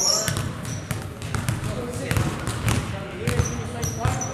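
Basketballs being dribbled on a hardwood gym floor, many bounces at irregular spacing, with brief high sneaker squeaks and voices in the hall.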